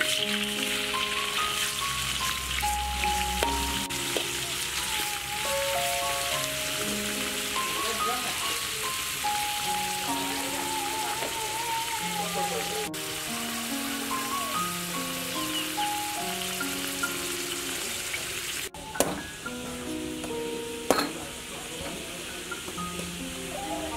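Pieces of snake meat sizzling loudly in a hot wok, starting abruptly as they are tipped in. Near the end two sharp knocks follow: a knife striking a green coconut.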